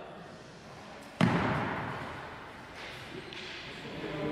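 One sharp, loud thump about a second in, its echo dying away slowly in a large, reverberant sports hall.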